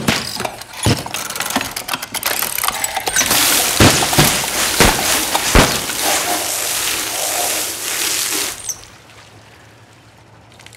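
Some clicks and knocks, then from about three seconds in a loud, steady hiss of water spraying and splashing into a flooded service pit, with a few heavy thuds through it; the hiss cuts off suddenly near the end.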